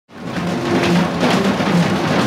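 Acoustic drum kit played as a solo, with repeated strikes and ringing low drum tones; the sound fades in quickly at the very start.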